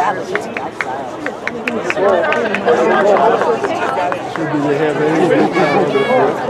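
Spectator chatter: several voices talking over one another, with no clear words. A quick string of short, sharp clicks comes in the first two seconds.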